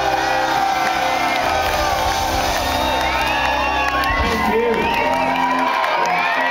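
A live rock band holding a final ringing chord while a club crowd cheers and whoops. The low end of the chord drops away near the end, leaving mostly the cheering.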